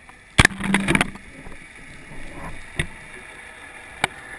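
Underwater recording with a sudden cluster of loud, sharp clicks and knocks about half a second in, lasting about half a second. It is followed by softer scattered knocks and one more click near the end, over steady water hiss.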